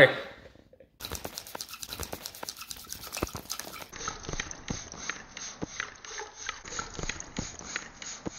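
Palms rubbing a wooden skewer rapidly back and forth to spin a straw sprinkler, with water spraying and spattering from it: a quick, irregular run of clicks and rubbing.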